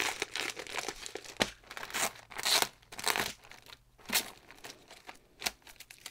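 Clear plastic bag crinkling as hands handle it: irregular rustles with several louder crinkles scattered through.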